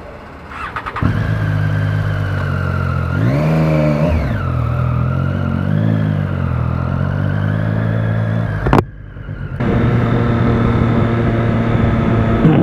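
Triumph motorcycle engine started: a brief cranking sound, then it catches about a second in and runs, with revs rising and falling as it pulls away and a smaller rise a couple of seconds later. A sharp click comes near the three-quarter mark, the sound drops out briefly, then the engine runs steadily again.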